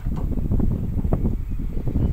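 Wind buffeting the microphone: a loud, gusty, uneven rumble.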